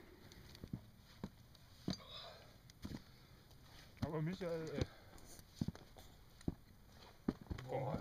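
Sparse sharp knocks and clicks over a faint background, with a short voice sound about four seconds in; a man begins speaking near the end.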